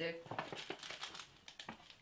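Metallic foil gift bag crinkling and rustling as a hand rummages inside it and draws out a small present; the irregular crackles thin out near the end.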